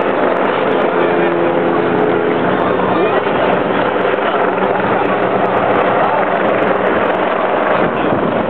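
A helicopter flying overhead, its steady rotor drone mixed with the chatter of a roadside crowd.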